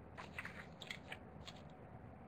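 Quiet room tone with a few faint, scattered short clicks.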